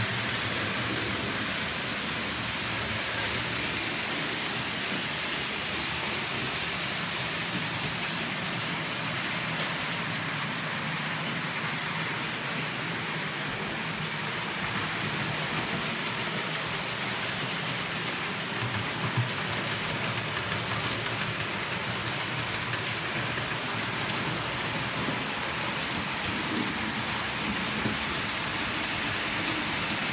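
OO gauge model trains running on the layout: a steady whirring hiss of motors and wheels on the track, with a few light clicks past the middle.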